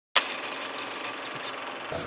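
A steady hiss that cuts in abruptly with a click just after the start and holds evenly.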